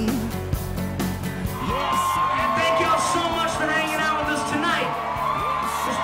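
Live band music with a crowd yelling and whooping over it.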